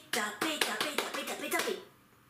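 A woman's voice in a quick, lively chant, crossed by sharp hand claps; it stops shortly before the end.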